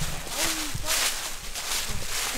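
Footsteps crunching through dry leaves on the forest floor, several steps at a brisk walking pace, with a short vocal exclamation about half a second in.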